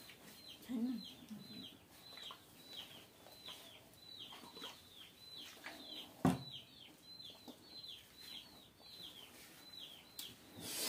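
Birds peeping faintly in the background, a steady run of short, high, falling peeps about two a second. A single sharp knock comes about six seconds in.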